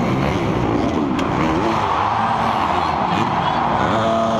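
Supercross dirt bike engine revving up and down as the rider races through the track, heard close from an onboard camera with a steady rush of noise behind it.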